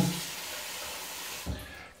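Tap water running into a bathroom sink as a steady hiss, which stops about a second and a half in with a short low knock.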